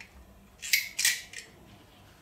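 One-click fibre-optic cleaning pen pushed onto a connector end face, its spring-loaded mechanism clicking twice in quick succession, followed by a fainter click.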